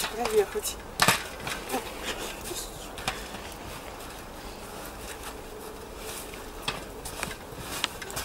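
A bicycle being ridden and pushed through deep snow: scattered crunches and knocks over a steady hiss, the loudest knock about a second in.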